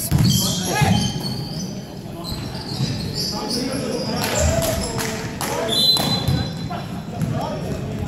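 Basketball game on a hardwood court: the ball bouncing, with repeated short thuds and knocks echoing in a large indoor hall. A brief high tone sounds about six seconds in.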